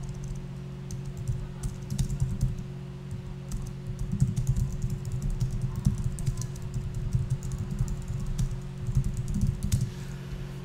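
Typing on a computer keyboard: an irregular run of key clicks, busier from about four seconds in, over a steady low hum.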